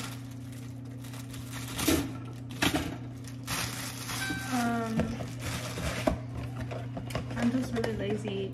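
Plastic bag of frozen waffles crinkling as it is handled, with a few sharp knocks, about two, three and six seconds in, as the waffles are set at a toaster. A steady low hum runs underneath.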